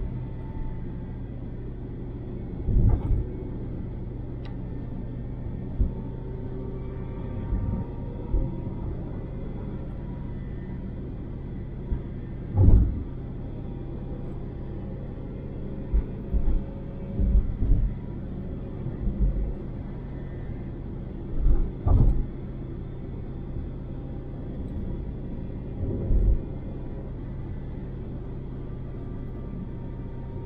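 Road and engine noise inside a car cruising on an expressway: a steady low drone, broken every few seconds by short low thumps, the loudest about halfway through.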